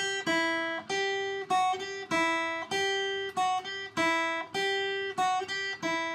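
Acoustic guitar played one note at a time: plucked single notes at a steady pace, each ringing and fading before the next, in a short figure that repeats about every two seconds.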